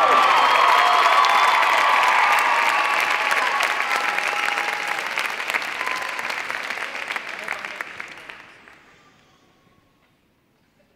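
Audience applauding in a gymnasium right after the ensemble is announced; the clapping thins out and dies away about nine seconds in.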